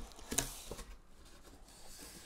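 Cardboard mailer box being opened by hand: a few faint clicks and scrapes of the cardboard, the sharpest about a third of a second in.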